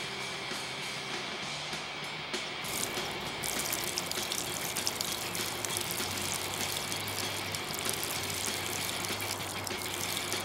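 A stream of liquid trickling and splashing into water, setting in about three seconds in and running on steadily.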